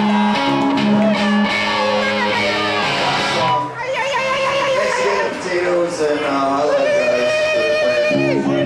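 Live band playing amplified electric guitars, with a voice singing over them in a large room.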